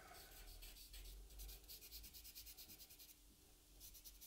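Faint scratching of a soft charcoal stick on paper in quick, short, repeated strokes, dying away about three seconds in.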